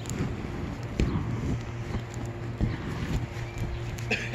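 Wind buffeting the microphone with a steady low hum, broken by a few faint knocks.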